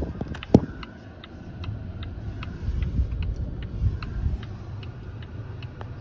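Car turn-signal indicator ticking steadily, about two and a half ticks a second, over low road noise inside the cabin, signalling a left turn. One sharp knock sounds about half a second in.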